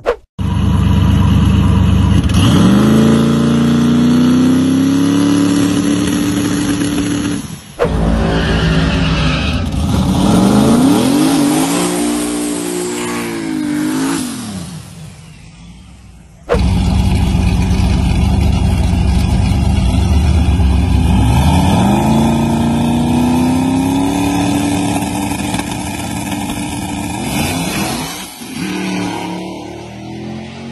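V8-swapped Mazda Miata drag car launching and accelerating hard, its engine pitch climbing and dropping back through the gear changes. Three separate runs follow each other with abrupt cuts about 8 and 16 seconds in, and the middle run fades as the car pulls away down the strip.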